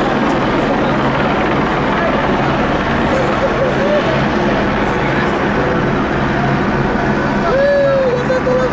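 Steady drone of a helicopter hovering overhead, mixed with vehicle noise, with voices calling out over it and one longer held call near the end.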